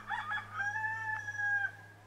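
A rooster crowing: a few short rising notes, then one long held note that stops about a second and a half in.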